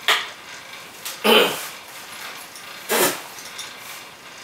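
A person coughing three times, about a second or more apart, the second cough the loudest.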